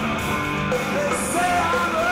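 A rock band playing loud and live, with electric bass guitar and electric guitars, in a continuous stretch of a song.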